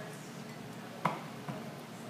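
Bottle handling on a bar: a sharp click about a second in and a fainter one half a second later, over quiet room tone, as a syrup bottle is poured into a glass and put down.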